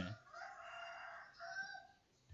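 A faint, drawn-out animal call, about one and a half seconds long, with a short break near the end.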